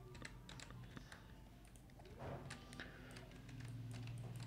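Faint computer keyboard and mouse clicks: a few light, scattered clicks over a steady low hum.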